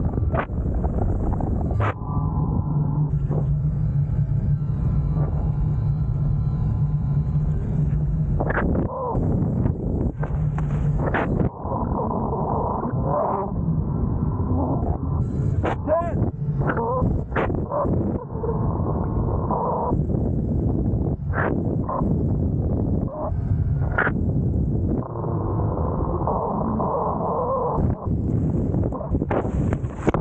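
Wind rushing over the microphone and water rushing past as a Fliteboard electric hydrofoil board rides up on its foil at speed, with frequent sharp gusts and splashes knocking the mic. A low steady hum starts about two seconds in and stops around eleven seconds.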